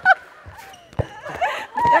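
A handball smacking once, sharply, about a second in, as it is thrown at the goalkeeper, with brief voices before and after it.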